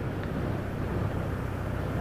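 Steady drone of engine and road noise from a vehicle cruising along a paved road, recorded on board.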